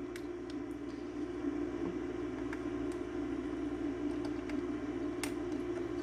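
Steady low electrical hum from running bench equipment, with a few faint, scattered clicks of handling at the workbench.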